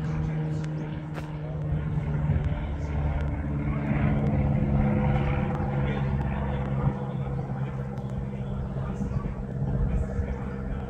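Propeller drone of a high-wing single-engine light aircraft flying overhead: a steady low hum that grows louder over the first half as the plane passes, then eases slightly.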